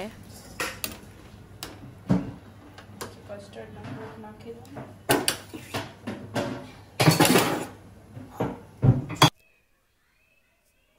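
Steel ladle stirring a steel pan of boiling dates and tamarind, with irregular clinks, knocks and scrapes of metal on metal. The clinks are loudest around the middle and a little later. The sound cuts off abruptly about nine seconds in.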